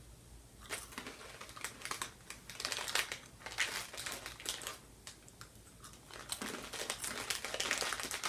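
Plastic snack bag of cheese puffs crinkling and crackling as it is handled, in irregular bouts with a short lull around the middle.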